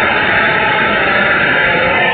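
Loud, steady rushing noise like static or hiss, even and unbroken.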